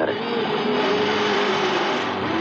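Car engine and road noise heard from inside a moving taxi, a steady hum.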